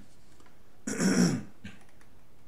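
A man's short throat-clearing cough about a second in, lasting about half a second.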